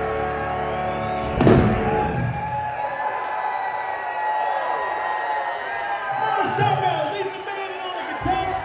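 Electric blues band (electric guitars, bass, drums and piano) holding its closing chord, ending on one loud full-band hit about a second and a half in. The hit rings out into the hall, and the audience cheers and whoops.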